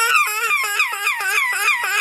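A high-pitched cartoon voice crying in rapid repeated sobs, about five a second.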